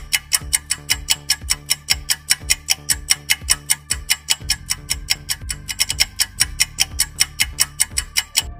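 Countdown timer sound effect: a steady, fast clock-like ticking, about four ticks a second, over a low bass beat.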